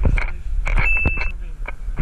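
A single short, high electronic beep, held for about half a second just under a second in. Brief voices and low street rumble sit around it.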